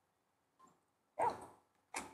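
A German Shepherd gives one short bark about a second in, during otherwise near-quiet moments.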